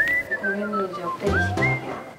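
Background music led by a whistled melody that slides down and then swoops back up, over a light accompaniment.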